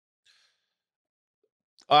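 A faint, short breath about a quarter second in, then silence until a man starts speaking at the very end.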